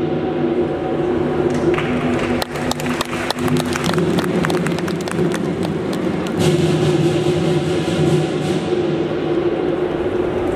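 Lion dance percussion band playing: large drum strokes over a steady ringing of gong and cymbals, with a flurry of quick, sharp strikes from about two and a half to four seconds in.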